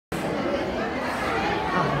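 Audience chatter: several people talking at once, with one word spoken near the end.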